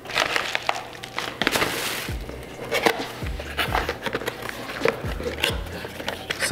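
Cardboard lens box being opened by hand: flaps and inner packaging rustling, scraping and crinkling, with a few low thumps as the box is handled on the countertop.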